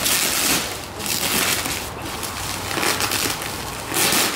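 Bubble wrap and plastic sheeting rustling and crinkling as it is pulled open by hand, in a few surges, the loudest in the first second.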